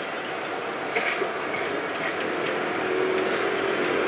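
Steady rushing background noise, with a faint steady hum that comes in about two and a half seconds in.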